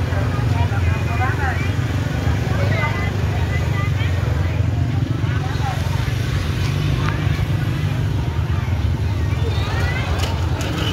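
Busy street-market ambience: motorbike engines running close by as a steady low drone, under overlapping chatter of many voices.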